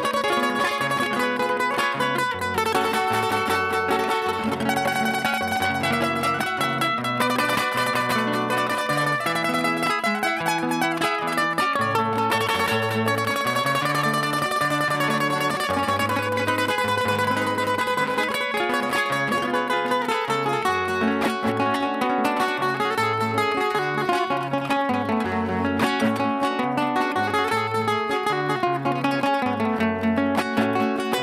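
Two Spanish acoustic guitars playing an instrumental passage of a Panamanian torrente in lamento style, with busy plucked melody notes over a moving bass line.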